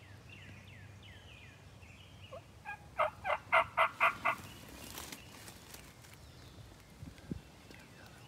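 A wild turkey gobbler gobbles once, about three seconds in: a loud, rapid rattling call lasting about a second and a half. Small songbird chirps sound faintly before it.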